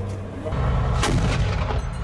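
A single sharp gunshot about a second in, over a steady low rumble of combat.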